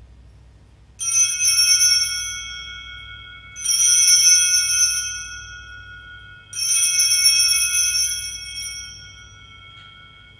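Altar bells rung three times, about two and a half to three seconds apart, at the elevation of the chalice after the consecration. Each ring is a bright jangle that fades out over a couple of seconds.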